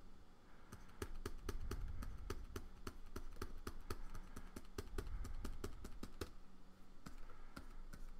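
Rapid, irregular clicking and tapping of computer input devices, several clicks a second, from working a keyboard and a pen display's stylus, over a faint steady hum.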